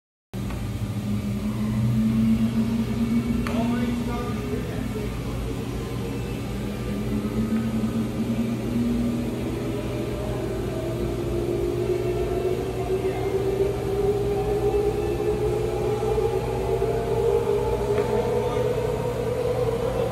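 Large synchronous motor being run up to speed on gradually increased voltage: a steady electrical hum with a whine that climbs steadily in pitch over the second half as the rotor accelerates.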